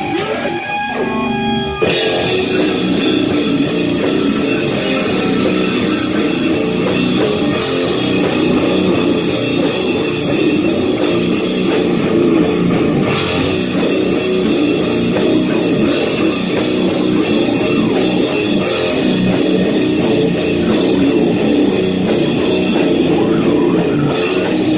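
Metal band rehearsing at full volume: distorted electric guitar, bass and drum kit. A thinner, quieter passage in the first two seconds before the whole band comes in.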